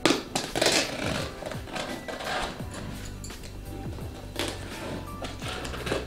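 Background music, with several short scratchy rasps of a blade slitting packing tape and a cardboard box being handled.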